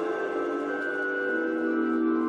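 Orchestra with organ holding sustained chords, the lower notes moving to a new chord about a second and a half in.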